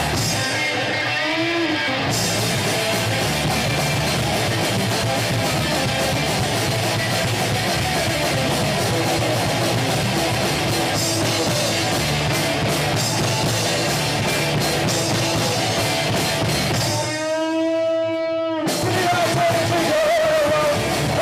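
A punk rock band playing live, with loud distorted electric guitars through Marshall stacks, bass and drums. Near the end the band drops out for about a second and a half, leaving one held note ringing alone before the full band comes back in.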